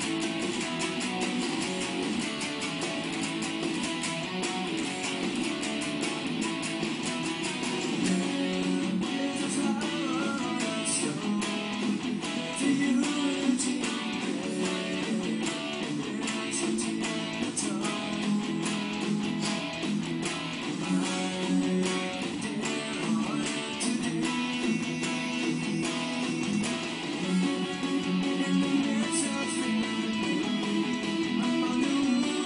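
Guitar playing one of a song's two guitar parts straight through, with many sharp pick attacks and a steady level.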